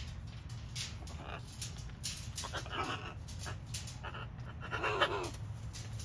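A blue-and-gold macaw and a red macaw play-wrestling beak to beak, with quick clicks and taps throughout. Two short, raspy vocal grumbles come partway through and near the end, the second the louder.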